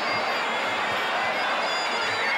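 Muay Thai stadium crowd noise over the traditional sarama fight music, with regular drum beats and short high reedy notes carrying on through the bout.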